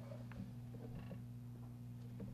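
Quiet room tone: a steady low electrical hum, with a few faint small ticks.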